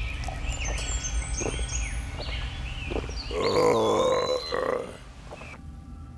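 Cartoon giant gulping down a pot of porridge with swallowing sound effects, then a long, loud burp about three and a half seconds in.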